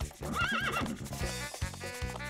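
A cartoon horse whinnying: a short, wavering high neigh about half a second in, over children's background music with a steady beat.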